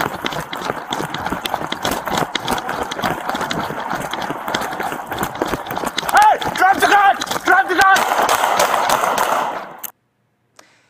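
Officer running on foot, heard through a body-worn camera microphone: continuous rustling and thudding footfalls with clothing brushing the mic. About six seconds in an officer shouts twice in quick succession; the sound cuts off suddenly near the end.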